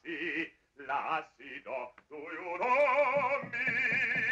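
A man singing wordless phrases in an operatic voice with strong vibrato, in short bursts broken by brief pauses. The last phrase, from about halfway through, is the longest and loudest.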